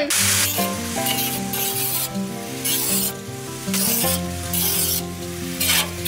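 Background music with held chords, over the hissing rasp of an angle grinder scrubbing the inside of a cut steel drum. The rasp comes and goes in spells of about a second.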